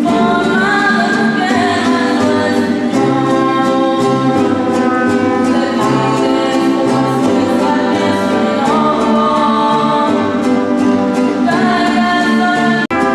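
Women singing together with mariachi accompaniment: group voices hold long notes over strummed guitars and a steady bass beat.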